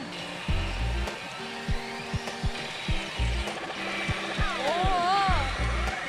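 Pachinko machine's battle-sequence music, a steady beat of low drum hits over held synth tones.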